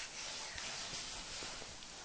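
Quiet room tone: a faint, steady hiss with a few soft, barely audible rustles and no voices.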